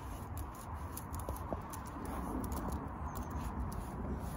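Light handling sounds of a cloth wiping a reacher stick dry, with a few small ticks and taps, over a steady outdoor background hiss.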